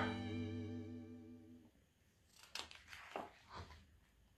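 A held musical chord in the background music fades out over the first second and a half. Then come a few soft paper rustles as a page of a picture book is turned.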